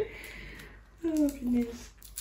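A woman's voice in a short, falling utterance about a second in, over faint rustling from a gift bag being handled.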